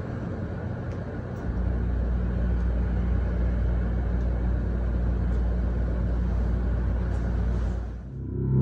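Dark ambient drone: a steady low rumble with a few held deep tones and a hiss over them, swelling louder about a second and a half in.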